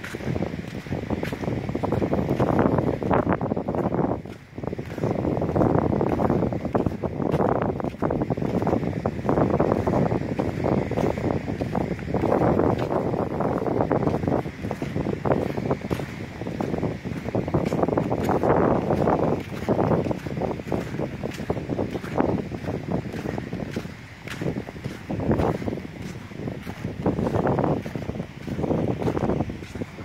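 Wind buffeting a handheld camera's microphone on a beach, rising and falling in uneven gusts.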